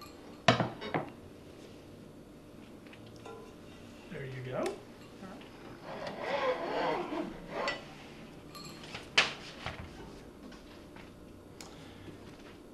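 Plate and metal cake pan knocking and clinking on a table as a baked cake is turned out of its pan onto a plate: two sharp knocks near the start and two more about nine seconds in, with quieter handling in between.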